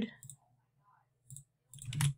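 Two short clicks from a computer mouse and keyboard during copy-and-paste work. The first is faint, about a second and a half in; the second, louder one comes near the end.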